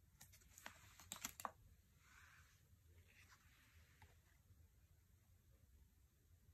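Oracle cards being handled and swapped: a quick cluster of faint clicks and taps of card stock in the first second and a half, then a couple of soft sliding swishes.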